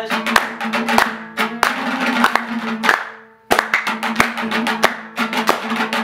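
Hazaragi dambura strummed in a fast rhythm, with hand claps and a steady held harmonium note underneath. The music drops out briefly just past the middle, then resumes.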